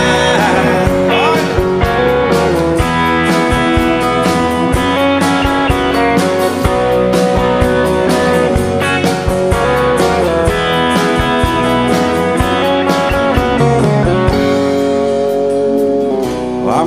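Instrumental break of a country song: a band led by guitar over bass and a steady drum beat, with no singing.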